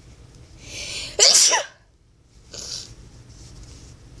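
A girl sneezes once: a hissing in-breath, then a loud sneeze just over a second in, followed by a short breath about a second later.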